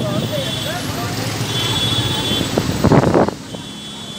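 Road and engine noise heard from inside a moving vehicle in city traffic, with indistinct voices in the background. The voices get louder briefly about three seconds in, then the sound drops quieter near the end.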